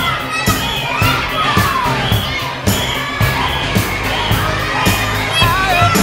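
Crowd of children shouting and cheering over music with a steady drum beat.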